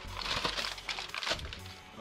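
Aluminium foil crinkling as it is peeled and flexed under a hardened slab of chocolate-covered saltine toffee, with crisp cracks as the slab breaks apart, over background music.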